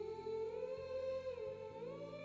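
Background score: a soft, slow hummed melody of long held notes that glides up and down gently.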